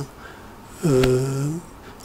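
A man's voice making a single drawn-out hesitation sound, a held nasal 'mmm' or 'ehh' lasting under a second near the middle, with short pauses on either side.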